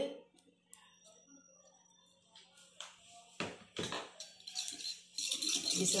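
A few light knocks of a utensil against a steel bowl, then near the end a spoon stirring and scraping in the bowl as beaten egg is mixed.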